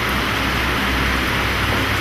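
Steady hiss with a low hum underneath: the background noise of the hall recording, with no speech.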